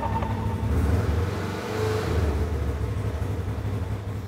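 A Polaris RZR XP 1000 side-by-side's twin-cylinder engine running, a steady low rumble that swells slightly about a second in and again near two seconds.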